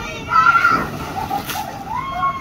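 A child sliding down a wet inflatable water slide and splashing into the water at the bottom, with high voices calling out over it.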